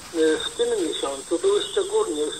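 Polish speech in a radio broadcast, the voice thin and narrow like a radio or phone line, with a steady high-pitched whine under it.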